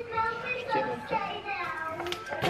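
A young child's voice talking, quieter than the talk around it.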